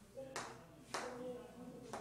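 Chalk tapping against a blackboard: two sharp taps about half a second apart as the chalk meets the board.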